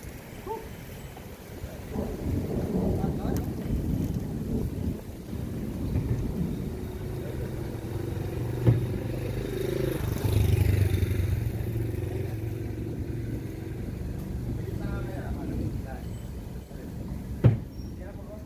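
A large wooden cabinet being tipped upright and shifted by hand, with two sharp knocks, one about nine seconds in and a louder one near the end, over a steady low rumble and murmured voices.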